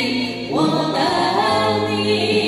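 A man and a woman singing a duet into handheld microphones, amplified, holding long notes.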